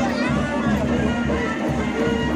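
Ghumura folk dance music: a steady rhythm of drums underneath and a wavering, sliding melody above, with crowd voices mixed in.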